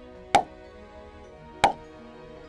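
Two loud, sharp cracks about a second and a half apart, the sound of a back being cracked during a chiropractic adjustment, over background music.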